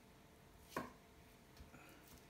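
Faint knife-on-potato sounds as the skin is peeled from a boiled potato by hand: one short scrape about a second in, then a few light ticks.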